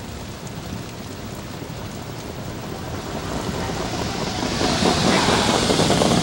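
Rumbling noise of the field of trotters and their sulkies approaching at the start of the race, growing steadily louder, with a hiss building over it in the last couple of seconds.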